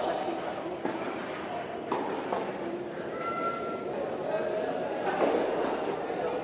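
Tennis balls struck by rackets during a doubles rally: a few sharp pops a second or so apart, over a steady murmur of spectator chatter.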